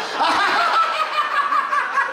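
A group of people laughing heartily together on cue, a man's laugh into the microphone loudest among them.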